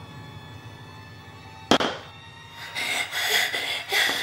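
Horror sound effects: a low drone, then a single sudden loud bang a little under two seconds in, followed by a harsh, bright, wavering noise for the last second or so.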